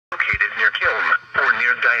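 A Midland NOAA weather radio's speaker reading out a severe thunderstorm warning in a broadcast voice, with a steady low hum beneath. Two low thumps come in the first second.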